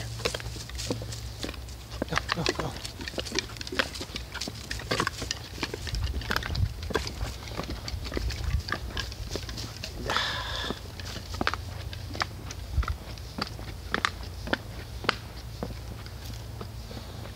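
Footsteps and dog paws knocking on the wooden planks of a narrow woodland boardwalk: irregular clicks and thuds, several a second, with a brief rustle about two-thirds of the way through.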